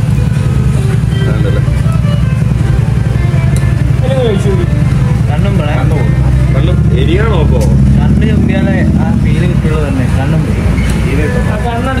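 Voices talking indistinctly in bursts over a loud, steady low hum.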